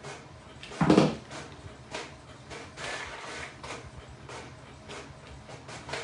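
A hard knock about a second in, then a run of irregular light clicks and taps: a hot glue gun set down and a wooden dowel handled against plastic tile pieces on a tabletop.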